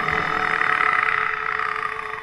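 A man's karaoke voice holding one long sung note at a steady pitch over the backing track, fading out near the end.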